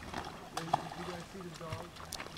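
Faint, distant voices talking, with no clear words.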